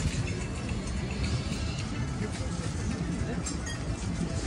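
Street ambience of background music mixed with people's voices and chatter, steady with no single loud event.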